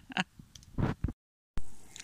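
The end of a man's laugh and a short noise, then a sudden drop to dead silence at an edit cut. A sharp click about one and a half seconds in starts the next clip and dies away quickly.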